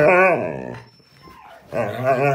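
Siberian husky 'talking back' with long, wavering, howl-like grumbles: one lasting about a second at the start, and another beginning near the end. It is a protest at being ordered off the bed.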